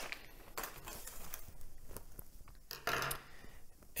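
Faint crinkling of torn plastic shrink-wrap and light handling of a small cardboard filter box, with scattered soft clicks and taps. A slightly louder rustle comes about three seconds in.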